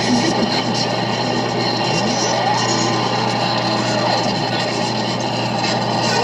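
Harsh noise music from a chain of effects pedals: a dense, steady wall of noise over a constant low hum, with tones gliding up and down as the pedal knobs are turned.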